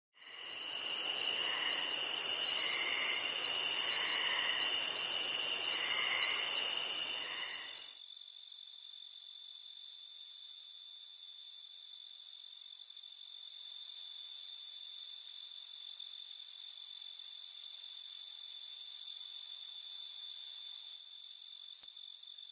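Insect chorus: a steady high-pitched trill that holds throughout. For the first eight seconds or so it sits over a soft rushing haze, with a higher buzz that comes and goes. Both of those stop abruptly, leaving the trill on its own.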